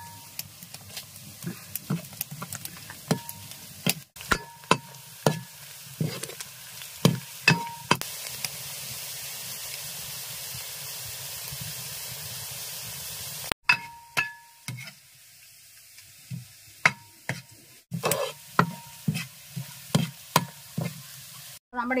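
A wooden ladle stirs and knocks against a metal pan, each knock giving a short metallic ring, while chopped ginger, green chillies, curry leaves and dried red chillies fry in oil. Midway there is a few seconds of steady sizzling with no knocking.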